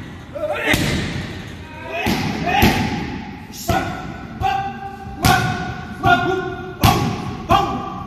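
Kicks and punches landing with sharp thuds, first on a heavy bag and then on Thai pads. They come about two seconds apart at first, then about one every three-quarters of a second.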